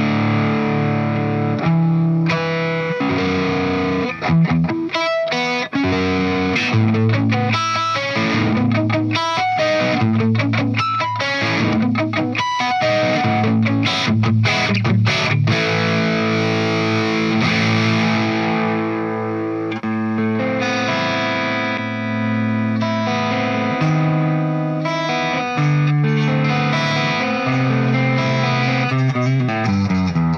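Charvel Pro-Mod Relic San Dimas electric guitar with two humbuckers, played through a modded Marshall 1959HW Plexi amp with some distortion. It plays held, ringing chords, with a middle stretch of short, choppy stabs and quick picked notes broken by brief stops.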